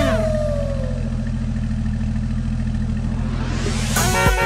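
Cartoon engine sound effect for a fire truck, running steadily with a low, fast-pulsing rumble. A tone slides downward over the first second, and a hiss swells near the end.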